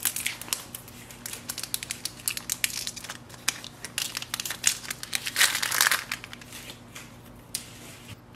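Foil pouch of ZINK photo paper being opened and handled, its foil crackling and crinkling in irregular bursts, with a denser burst of crinkling about five and a half seconds in.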